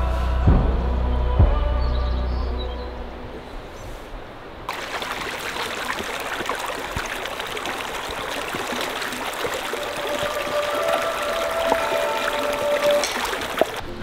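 Background music with deep drum hits fades out over the first few seconds. Then the steady rush of a shallow mountain stream running over rocks.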